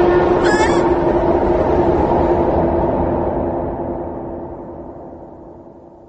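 Dramatised train sound effect: a low rumble with a steady droning tone that fades away over several seconds. A brief warbling cry comes about half a second in.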